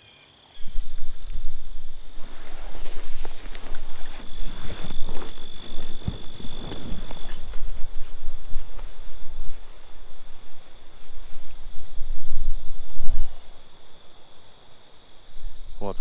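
Gusty wind rumbling on the microphone, with rustling from cedar branches and a leafy camouflage suit, over a steady high trill of insects. The wind eases near the end.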